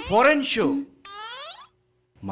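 A man's voice speaking Bengali film dialogue, ending about a second in on a drawn-out falling tone, then a short pause.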